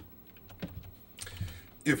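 A few scattered clicks of computer keyboard keys being pressed, with a quiet stretch between them.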